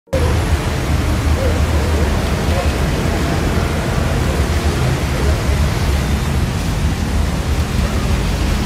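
Steady loud background noise with a deep rumble, with faint voices mixed in.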